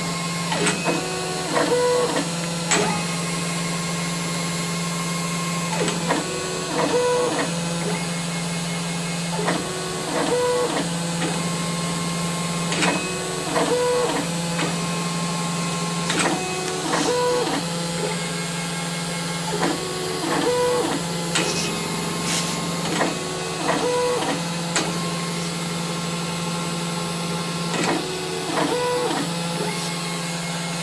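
High-speed engraving spindle on a Grizzly G0705 mill running with a steady hum, while the machine's axis motors whir through short, repeated stepping moves every second or two. The machine is pecking a test pattern of marks into a brass plate.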